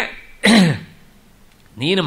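A man clears his throat once, briefly, about half a second in; his speech resumes near the end.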